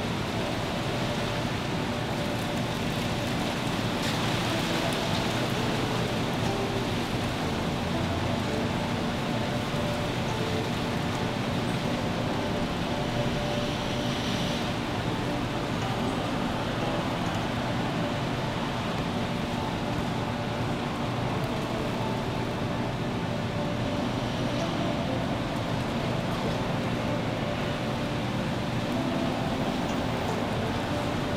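A steady, even rush of noise with faint sustained tones beneath it, unchanging in level throughout.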